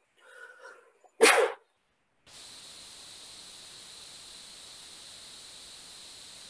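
A faint murmur, then one short, loud burst of noise about a second in, then a steady hiss like line static from about two seconds in.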